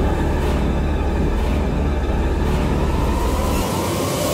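A steady low rumbling drone of cinematic trailer sound design, which drops away shortly before the end.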